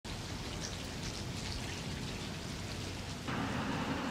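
Rain falling, a steady hiss with faint patters; a little past three seconds in it suddenly becomes louder and fuller.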